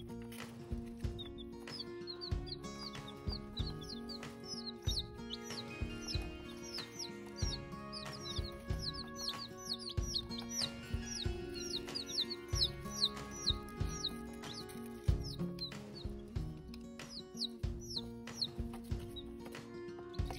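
A group of Polish chicken chicks peeping continuously, many short high downward-sliding chirps overlapping, over background music. Irregular soft knocks sound now and then.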